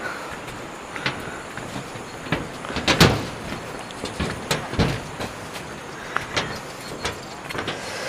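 Footsteps and knocks on the plank deck of a cable suspension footbridge as it is walked across: irregular knocks and rattles, the loudest about three seconds in, over a steady hiss.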